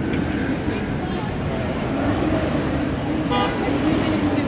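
Busy city street traffic with passers-by talking, and one short horn toot about three seconds in.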